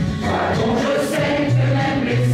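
A choir of mostly women's voices singing together in held notes, with low sustained notes beneath.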